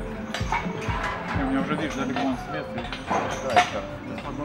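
Low voices of people standing around, with a few sharp clinks and knocks; the loudest knock comes a little after three and a half seconds in.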